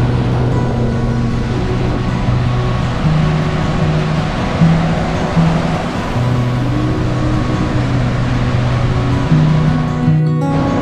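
Background music: held low notes that change every second or so, over a steady wash of noise.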